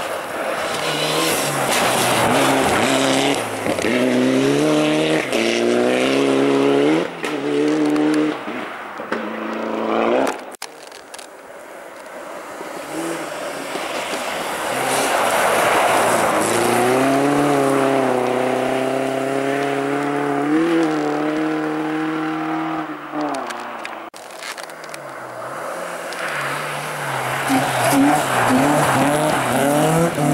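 Rally car engines at full throttle on a snow stage, in three separate passes. First a car accelerating, its revs climbing and dropping again through several gear changes; after a sudden cut a green Volvo 240 sliding sideways past with its engine held steadily at high revs; after another cut a Peugeot rally car revving hard as it pulls away.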